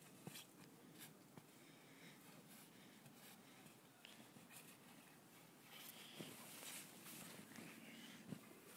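Near silence with faint, irregular crunching of snow as a small child walks and handles it, and a short rise of hiss about six seconds in.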